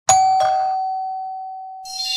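A two-note chime, a high note then a lower one, in the manner of a doorbell ding-dong, ringing on and slowly fading. Bright shimmering music comes in near the end.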